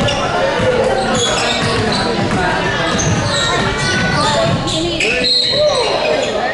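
Basketball game sounds in an echoing gym: a ball bouncing on the hardwood court under overlapping shouts and voices, including a call of "let's go".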